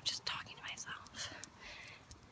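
Soft, breathy whispering: a string of short hushed voice sounds.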